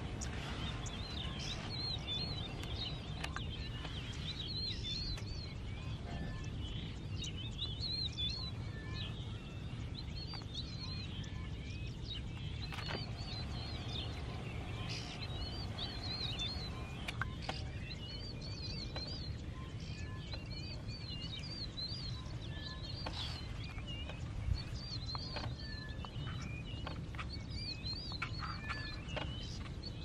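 Wild birds singing: high, wavy chirping phrases repeat over and over, with short, level whistled notes from a second bird now and then, over a low, steady rumble.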